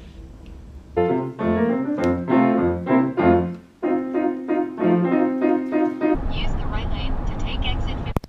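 Grand piano being played: a run of notes begins about a second in, then repeated chords, and it stops suddenly about six seconds in. A low steady car-cabin road rumble follows.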